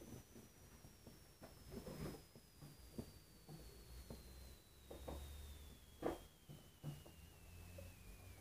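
Faint chewing and mouth noises, a few small clicks, the loudest about six seconds in. A faint thin high tone slowly falls in pitch underneath.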